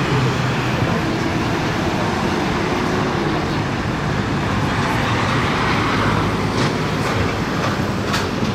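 Steady road traffic noise from cars, taxis and scooters on a multi-lane city road, with a low engine hum under it and one vehicle passing louder about five to six seconds in.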